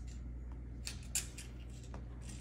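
Kittens scuffling on a hard laminate floor: a few faint, brief scratchy clicks, the loudest just over a second in, over a low steady hum.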